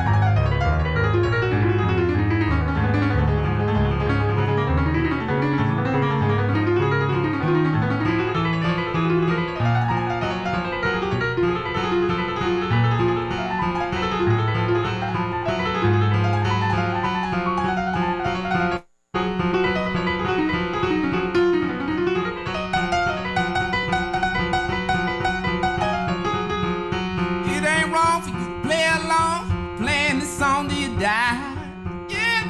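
Grand piano played solo, a bouncing left-hand bass line under chords that settles into a repeated low note past the halfway point, with fast runs high on the keyboard near the end. The sound drops out for a split second about two-thirds of the way through.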